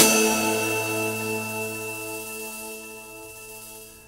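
A single final stroke on the snare drum and ride cymbal on the closing downbeat of the exercise, then the cymbal and a held low musical note ringing on and slowly fading away over about four seconds.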